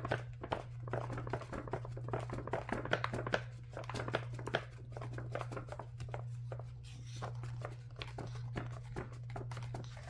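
Faint, scattered light clicks and taps from hands touching and handling a paper planner on a table, over a steady low hum.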